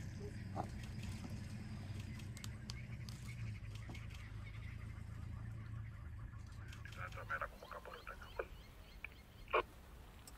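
Several short bird calls, the loudest one near the end, over a low steady hum that fades out about seven seconds in.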